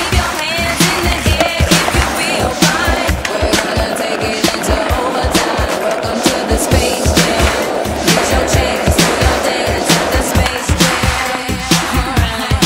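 Skateboard wheels rolling on asphalt, with clacks of the board, mixed under loud music with a steady beat.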